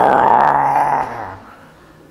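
A man's voice making a loud, rough, breathy explosion noise into a close microphone, mimicking a bomb going off; it holds for about a second and dies away.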